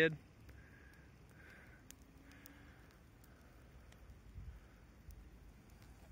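Near silence in the woods: faint outdoor ambience with a few faint clicks.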